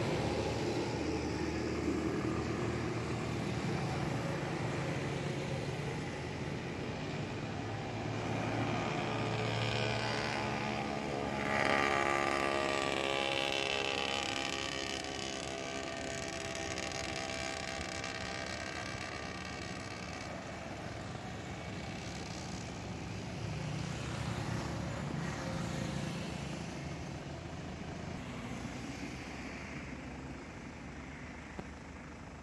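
Motor vehicle engines running: a steady low engine hum, with one vehicle growing louder about eleven seconds in and then fading away.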